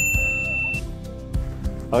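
Background music, with a short bright ding at the start from a subscribe-button animation that rings on for under a second.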